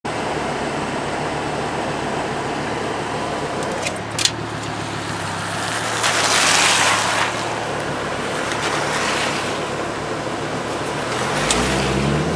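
Car engine running steadily at low revs, heard from inside the cabin over a wash of wet-road hiss. There are two sharp clicks around four seconds in and a loud swell of hiss at about six to seven seconds. Near the end an engine revs up, rising in pitch.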